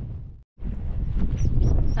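Wind buffeting the camera microphone: a rough, low rumble with no clear pitch, which fades and cuts out completely for a moment about half a second in, then returns at full strength.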